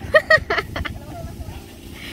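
A person laughing in four short bursts during the first second, then only low outdoor background.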